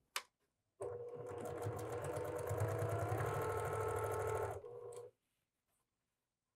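Electric sewing machine stitching a seam through pieced quilt blocks: a click, then the machine runs steadily for about four seconds with rapid, even needle strokes and stops.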